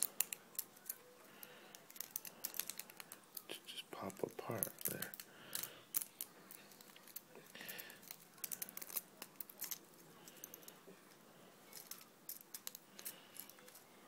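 Thin 3D-printed plastic raft and support material snapping as it is broken off a printed part by hand: an irregular run of small, sharp cracks and clicks.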